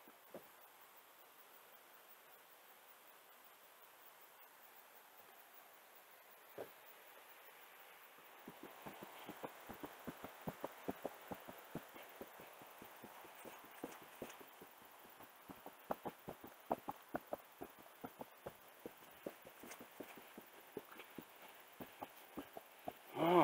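Faint footsteps on a wooden boardwalk: an irregular run of soft knocks, several a second, beginning a little over a third of the way in. Before that, near silence with a faint hiss.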